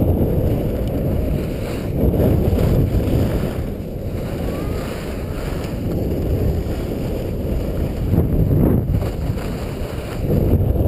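Wind rushing over the microphone of a skier's camera while skiing down a groomed slope: a loud, low rumble that swells and eases as the skier moves.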